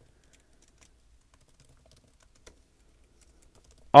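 Faint computer keyboard typing: scattered, irregular keystrokes.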